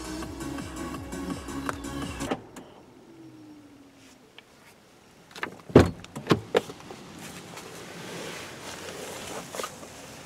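Background music ends about two seconds in. After a quiet gap, a quick run of sharp clicks and a knock as the 2017 Nissan Murano's interior door handle is pulled and the door latch releases, followed by faint steady hiss.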